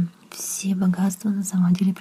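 Speech: a voice talking continuously, with a brief pause just after the start.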